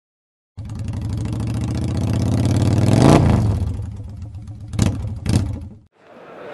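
Motorcycle engine revving: the revs climb to a peak about three seconds in and drop back, then two short throttle blips, before it cuts off suddenly.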